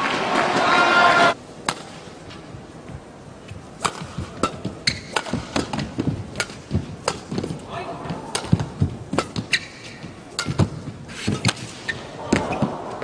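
A badminton rally: sharp cracks of rackets striking the shuttlecock at irregular intervals, mixed with players' footfalls on the court. A short burst of crowd voices opens and then cuts off suddenly, and crowd noise rises again near the end.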